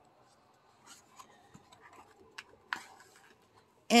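Faint rustling and a few soft ticks of thick, shiny coloring-book paper being handled as a page is held and turned.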